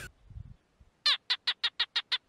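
Cartoon frog sound effect: after a second of near silence, a rapid run of six short calls, about six a second.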